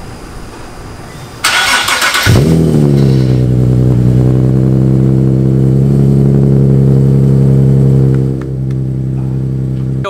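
Nissan 370Z NISMO's 3.7-litre V6 being started through a newly installed ISR single-exit exhaust and Y-pipe: about a second of starter cranking, then the engine catches with a brief flare of revs and settles into a steady, loud high idle. Just past eight seconds in, the idle drops to a lower, quieter note.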